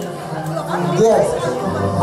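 A voice talking into a hand-held microphone, amplified over a PA, with music faintly behind it.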